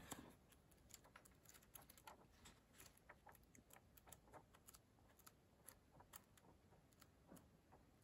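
Pages of a hardcover book flicking one after another off the thumb as it is riffled through: a run of faint, irregular paper ticks.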